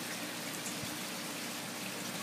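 Steady, even rush of water.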